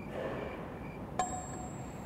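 Faint room noise, then a single short bright ping about a second in that rings briefly and fades.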